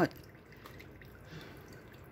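Faint rustling of old sphagnum moss being pulled off a phalaenopsis orchid's roots by hand.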